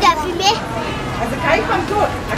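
Young children's high voices talking and calling out, several at once.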